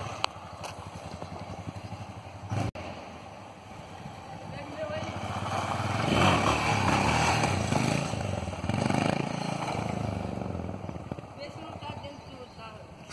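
Yamaha XT660 single-cylinder motorcycle engine revving as the bike accelerates past, growing louder to a peak about six seconds in, then fading as it rides away.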